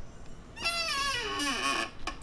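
Clamshell heat press's upper platen squeaking as it is let swing up slowly: one drawn-out squeal, about a second and a half long, that falls steadily in pitch.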